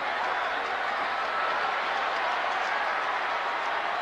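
Steady noise of a large stadium crowd, a continuous din of cheering and voices with no single event standing out.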